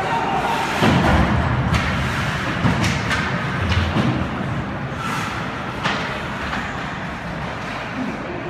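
Ice hockey play heard from rinkside: a string of sharp knocks and heavy thuds from sticks, puck and players hitting the boards, the heaviest about a second in and about four seconds in.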